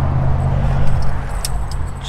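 Getting out of a pickup truck: the driver door swinging open over a steady low rumble, with a few light clicks and rattles near the end.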